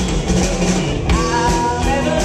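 Live rock band playing, with a drum kit and a woman singing into a microphone.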